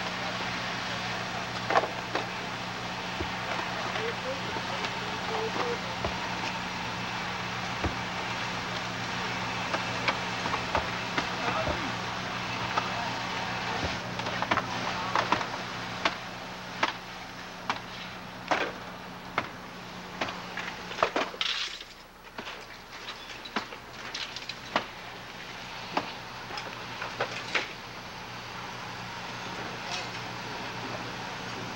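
Steady engine hum, typical of fire apparatus running at a fire scene, with repeated sharp knocks and cracks of firefighters' tools and debris on the roof. The hum drops away about two-thirds of the way in, while the knocks come more often.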